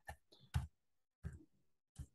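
A handful of keystrokes on a computer keyboard, about five sharp clicks at an uneven pace, as a password-style key is typed in.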